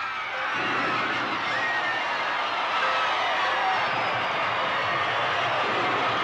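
A crowd of voices cheering and whooping in celebration. The cheering swells in about half a second in and then holds steady.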